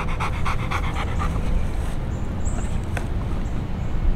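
Dog panting rapidly, about six or seven breaths a second, the panting fading after about two seconds. A steady low rumble of background noise runs underneath, with one sharp click about three seconds in.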